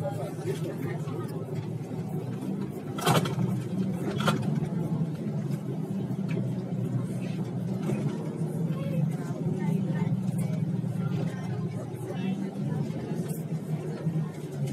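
Street ambience: a steady low hum of vehicle traffic with voices of people talking. Two sharp knocks come about three and four seconds in.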